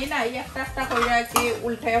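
A metal spoon stirring and scraping around a stainless steel frying pan, squeaking against the metal in a series of short pitched scrapes, with a sharp clink about two-thirds of the way through.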